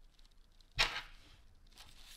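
Small rusty brass lighter parts handled in a gloved palm, with one short, sharp scrape or clack of the parts a little under a second in.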